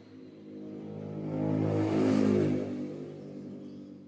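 A motor vehicle passing by, its engine and road noise swelling to a peak about two seconds in and then fading away.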